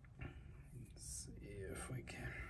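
Soft muttered speech, close to a whisper, too quiet for the words to be made out.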